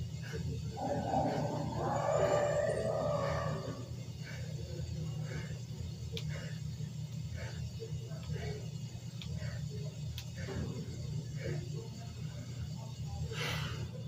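A steady low hum under a man's short, rhythmic exhales as he does bodyweight squats, with a stretch of muffled background voices about a second in and one stronger breath near the end.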